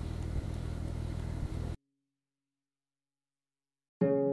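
Steady low room hum that cuts off abruptly to dead silence a little under two seconds in.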